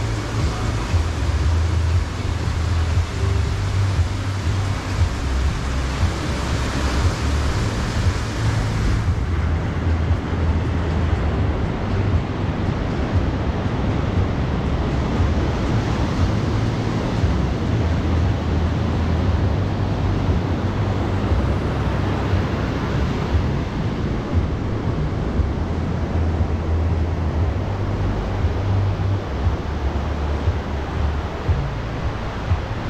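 Small waves breaking on a sandy shore: a steady, unbroken wash of surf with a low rumble underneath.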